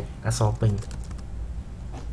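A few keystrokes on a computer keyboard as a short word is typed, after a brief bit of speech at the start.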